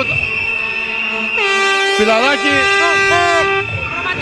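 A horn blows one steady held note for about two seconds, starting about a second and a half in, over excited shouting voices. Before it, a steady high whistle tone runs for about the first second.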